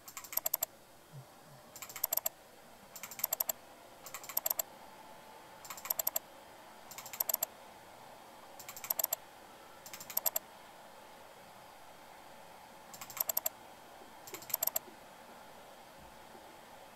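Computer mouse scroll wheel ticking in short bursts of rapid notches, about ten bursts roughly a second or so apart with a longer pause past the middle, as a web map is zoomed in step by step.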